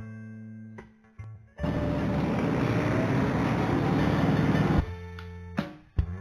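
Background music with plucked, guitar-like notes. About a second and a half in, a loud, even rushing noise cuts in over it for about three seconds, then stops suddenly and the music carries on.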